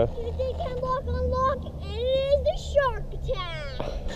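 A young child's voice making wordless sounds that rise and fall in pitch, over a steady low background rumble.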